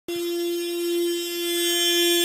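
Mazda hatchback's horn sounding one steady, unbroken note with nobody pressing it: the horn is stuck on.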